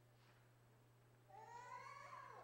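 Near-silent room with a steady low hum. About a second and a half in, a small child gives a brief high-pitched whine that rises slightly and then falls away.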